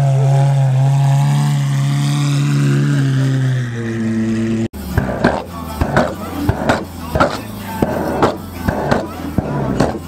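Lamborghini Aventador's V12 engine running steadily at low revs as the car rolls past. About halfway through, the sound cuts off abruptly to background music with a beat.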